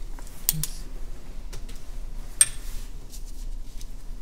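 A few light clicks and taps of small objects being handled, the sharpest two close together about half a second in and one near two and a half seconds in.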